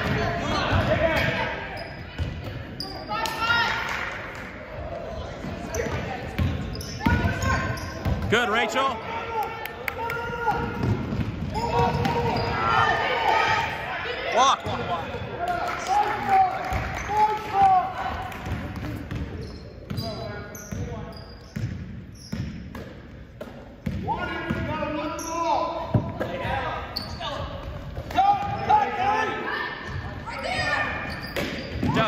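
A basketball being dribbled on a hardwood gym floor, short bounces echoing in a large gym, with voices calling out over them throughout.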